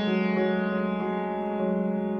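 Prepared grand piano: the notes of a chord struck just before ring on and slowly fade, with a wavering shimmer in the low notes. Soft new notes enter about half a second in and again later.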